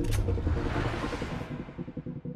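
Dark trailer score with low sustained tones, under a whoosh of noise that swells up early and fades away before the end.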